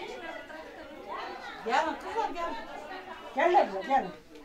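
Several voices talking over one another in a room, with louder words about two seconds in and again near the end.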